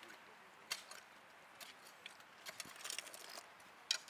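Faint, irregular scrapes and clicks of shovels working dry, stony soil in a trench.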